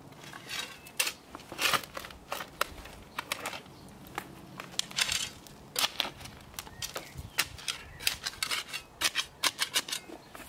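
Metal hand spade digging into stony clay soil: a run of short gritty scrapes and crunches as the blade cuts in and lifts out earth and small stones, coming in irregular clusters.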